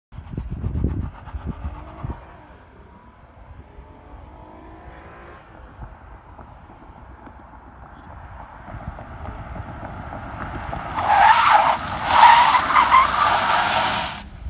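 Ford Explorer SUV braking hard with its ABS disabled: the tyres squeal loudly in two bursts near the end, with a short break between them, as the driver works the brake pedal at the edge of wheel lockup. Before that, the vehicle's approach builds up gradually.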